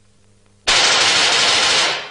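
Cartoon sound effect: a loud, rapid rattling burst like machine-gun fire, starting abruptly a little over half a second in and lasting about a second before fading.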